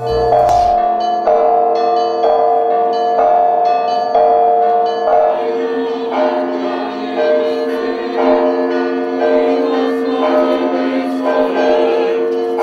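Orthodox church bells ringing in repeated strikes, each tone ringing on into the next. From about six seconds in, a crowd of worshippers singing joins the bells.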